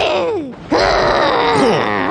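A cartoon character's voice: a short falling groan, then a longer, louder angry growling groan that drops in pitch near the end.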